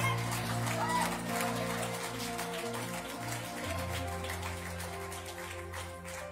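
A live church band plays soft backing music of long held chords over a bass line, with a bass note change about halfway through.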